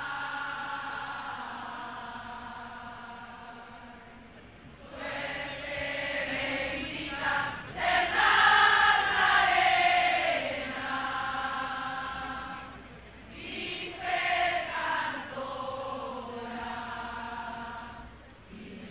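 A group of women singing a devotional hymn together in long held notes. A phrase fades away over the first few seconds, a new one begins about five seconds in and is loudest around the middle, and after a short break near the end another phrase starts.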